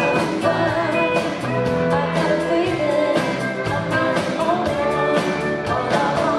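Live rock band playing: a woman singing lead over electric guitars, keyboards and a steady drum beat.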